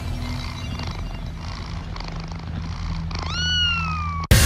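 A single cat meow near the end, rising and then sliding down in pitch, over a low, steady droning hum.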